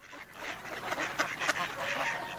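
A flock of mallard ducks quacking and chattering, many short calls overlapping.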